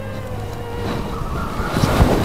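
Background music: held sustained notes, with a swelling hiss that builds toward the end.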